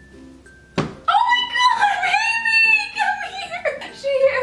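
A single thunk as the dog bumps its head while struggling free of a towel thrown over it. Right after comes a loud, high-pitched cry lasting about two and a half seconds that wavers in pitch.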